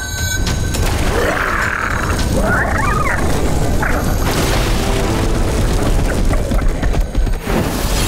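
Cartoon sound effects: a loud, continuous deep rumble with booms, under background music.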